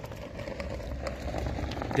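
Steady low outdoor background rumble in a pause between words, with a few faint ticks.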